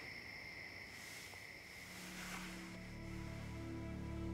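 Crickets chirring as a steady high tone, fading out as a low, sustained music drone swells in about halfway through.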